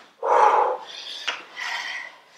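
A woman's forceful, breathy exhalations while doing squats and lunges: a loud one about half a second in and a lighter one near the end.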